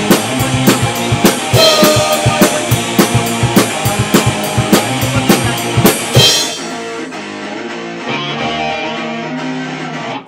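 Rock song with a drum kit keeping a steady beat under guitar. About six seconds in, the drums drop out, leaving held guitar and bass notes.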